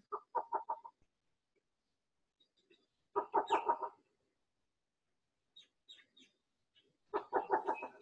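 Least bittern calling: three short series of about five quick, low, cooing notes each, spaced a few seconds apart.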